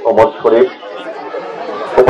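A man's voice speaking into a microphone for about half a second, then a pause filled with the low murmur of crowd chatter.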